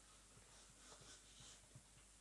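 Near silence, with a few faint light ticks and scrapes as a wooden moulding flask is lifted off a green-sand mould.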